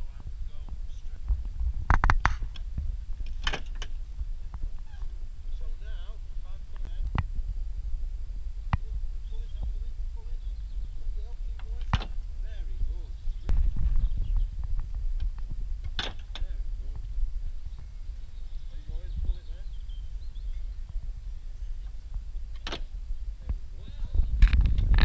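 Wind rumbling on the microphone, with faint voices in the background and a few sharp knocks several seconds apart.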